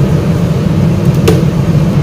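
Steady low mechanical hum, with a single sharp click a little over a second in.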